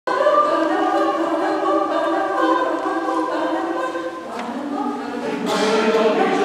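A choir singing held chords, moving to a new chord about four seconds in.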